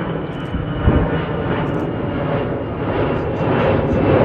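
Jet engines of an Allegiant Airbus A320-family airliner climbing out after takeoff: steady jet noise that grows somewhat louder toward the end, with a brief thump about a second in.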